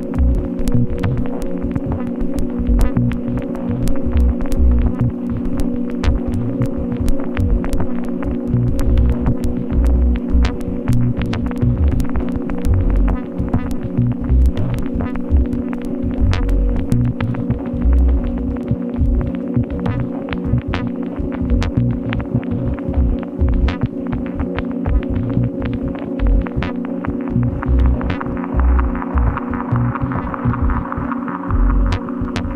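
Glitch-dub ambient electronic music: a steady low drone of held tones over an uneven pulsing bass, with thin clicks scattered throughout.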